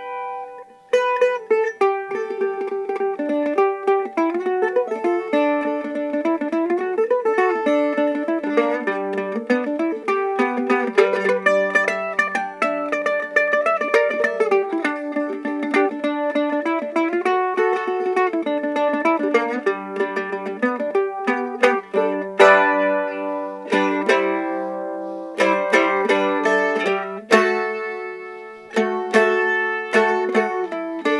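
Handmade HydeMade resonator mandolin played solo with a pick: a quick melody of single notes, moving to strummed chords in the last third.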